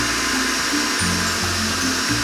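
Kenwood Chef stand mixer running steadily at low speed, whisking egg whites with icing sugar. Background music with a stepping bass line plays under it.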